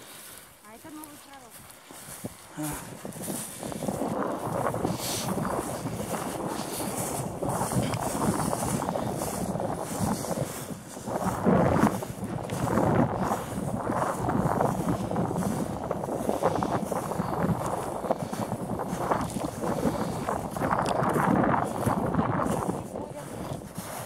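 Wind buffeting the microphone: a steady, fluctuating rushing noise that comes up about three seconds in and holds until near the end.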